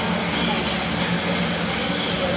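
Loud, steady stadium PA sound: the lineup introduction's music with an announcer's voice over the loudspeakers.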